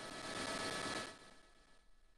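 A brief burst of steady hiss with a few faint steady tones in it, lasting about a second and then cutting off.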